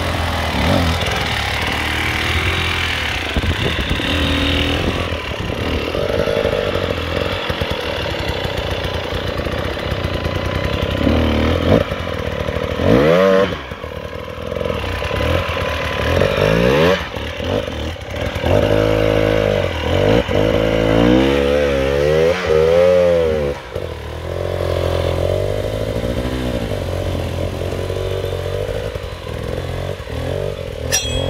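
Enduro dirt bike engines on a steep rocky climb, revving hard in short bursts with the pitch sweeping up and down again and again, the sharpest revs in the middle of the stretch.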